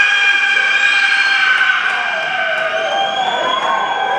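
Live rock band holding one long high note at a steady pitch, which bends downward about three seconds in.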